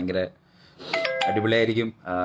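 Brief electronic chime of a few quick stepped notes about a second in, cut short as speech resumes.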